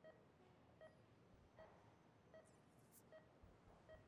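Faint, evenly spaced beeps of a hospital patient monitor, one about every 0.8 seconds, pacing the heartbeat.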